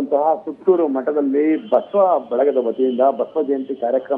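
Speech only: a man narrating continuously.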